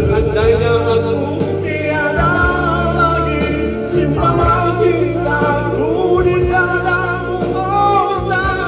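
A man singing a Malay pop ballad live into a microphone over a recorded backing track, amplified through a PA, with long held and sliding notes.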